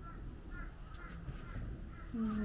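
A few faint, short bird calls, repeated several times, with a light click about a second in.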